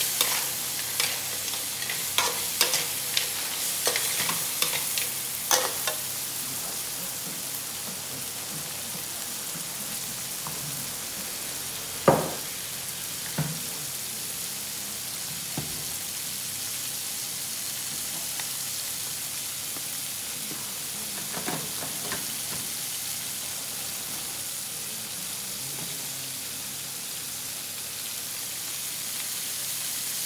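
Whole small crabs sizzling in hot oil in a wok, a steady hiss throughout. A metal spatula clicks and scrapes against the pan through the first few seconds, with one loud knock about twelve seconds in and a few lighter ones later.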